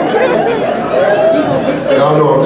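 Indistinct voices: a man talking at the microphone with audience chatter mixed in.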